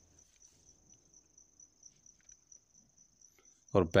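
A cricket's faint, steady high-pitched trill in an otherwise quiet room, with a man's voice starting again just before the end.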